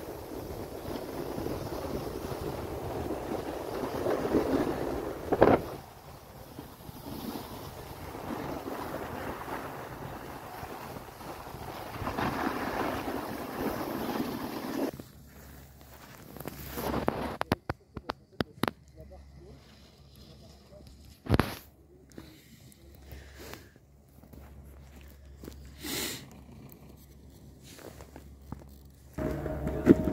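Skis sliding and scraping over snow, with wind rushing on the microphone, swelling in two surges with a sharp knock in the first half. Then much quieter, broken by a few short clicks and knocks.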